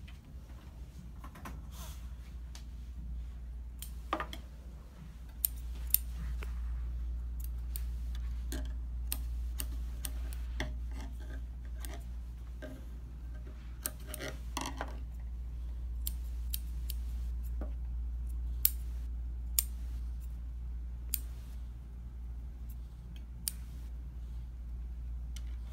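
Small scissor-type dog nail clippers snipping a dog's nails: sharp clicks at irregular intervals, a few of them much louder snaps, over a steady low hum.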